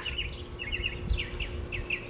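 Small birds chirping, a scatter of short, quick chirps several times a second, over a low background rumble.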